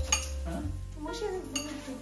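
Metal spoon clinking against a bowl as food is served, with a sharp clink at the start and another about one and a half seconds in, over background music with singing.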